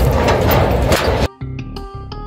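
A loud, dense noise with a few knocks from walking down metal stairs in a cave, cut off suddenly just over a second in by background music of plucked notes over a low bass.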